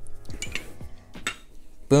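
Glass cologne bottles being picked up and moved about by hand, giving a few separate light clinks and knocks.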